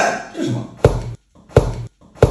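Two sharp smacks of a hollow white tube striking a man's head, the first a little under a second in and the second near the end.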